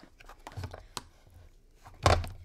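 Ice cream scoop scraping and scratching faintly into hard-frozen homemade ice cream in a plastic tub, with a sharp click about a second in.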